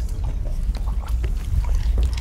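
A deep, steady rumble under scattered short clicks and creaks: a dark ambient drone from a horror film soundtrack.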